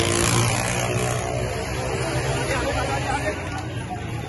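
Crowd noise at a street demonstration with a motor vehicle engine running close by, its drone strongest in the first second or so.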